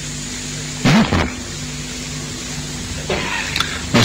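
Steady low electrical hum with a hiss on the recording, broken by a short vocal sound about a second in.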